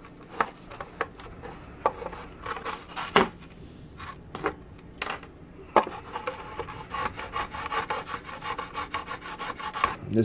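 Small brass hand plane shaving the edge of a thin wood strip: scattered short scraping strokes, then a steadier run of rapid strokes in the last three seconds or so.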